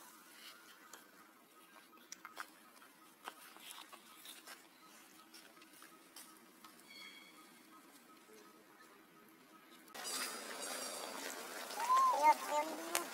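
Faint scattered clicks and rustles from macaques handling an infant on dry ground. About ten seconds in, a louder steady outdoor hiss comes in, and near the end a young monkey starts a high squeal that arches up and falls.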